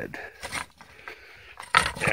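Metal rake tines scraping through loose garden soil: a short scrape about half a second in, then a louder, longer scrape starting near the end.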